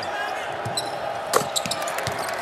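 Court sounds of a basketball game on a hardwood floor: a ball bouncing and shoes squeaking, with one sharp knock about one and a half seconds in.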